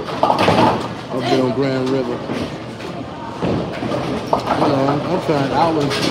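Speech: people talking, with a few faint knocks in between.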